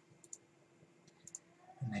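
Faint clicks of a computer mouse, two quick pairs about a second apart, over quiet room tone.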